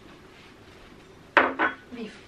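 Two sharp clinks of dishware, about a second and a half in and a quarter-second apart, each with a brief ring.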